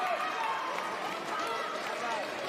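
Busy fencing-hall ambience: several voices calling and talking across the hall over a steady general hubbub.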